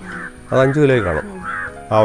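A person's voice: one drawn-out utterance about half a second in, rising and falling in pitch, with a shorter burst of voice near the end.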